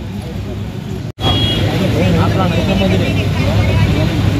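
Outdoor street background: a steady low rumble of traffic and engines with people talking over it. A brief dropout about a second in, after which the voices and rumble are louder.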